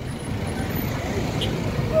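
Road traffic passing close by: cars and a heavy truck on a multi-lane road, a steady low engine-and-tyre rumble that grows louder. A woman's chanting voice comes in at the very end.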